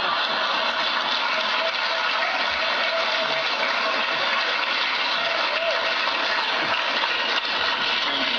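A large audience applauding steadily, with some laughter mixed in.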